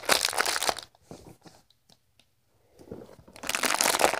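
Glossy plastic blind-bag packaging crinkling as fingers squeeze and work at it. It comes in two bouts: one in the first second, then, after a quiet pause, a second that starts about three seconds in and gets louder.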